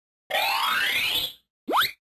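Logo-intro sound effect: a rising whoosh lasting about a second, then, after a short gap, a quick upward-sliding tone just as the logo appears.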